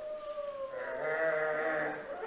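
A young man's voice imitating a wolf howl: one long howl that rises, then holds and slowly falls, growing fuller about a second in.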